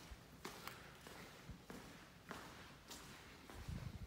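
Faint footsteps on a dusty tiled floor, a soft step about every half second, with a few low bumps near the end.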